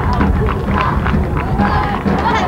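A group of men's voices chanting together as they march in procession, loud and continuous, with many short beats or footfalls under the voices.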